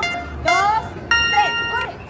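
Electronic countdown beeps: a short beep at the start, then a long steady beep about a second in that signals the start of a timed challenge.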